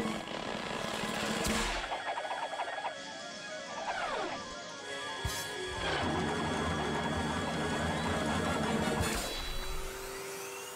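Cartoon soundtrack music laid under action sound effects, with one sound gliding steeply down in pitch about four seconds in. A heavier stretch from about six to nine seconds cuts off abruptly.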